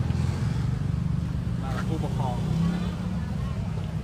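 Steady low rumble of a motor vehicle running close by in street traffic, under a few spoken words about two seconds in.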